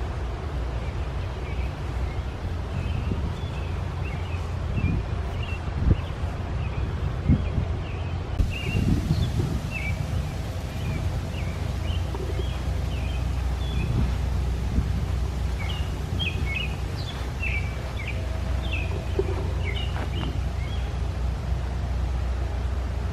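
Small songbirds chirping in short, repeated calls, over a steady low rumble.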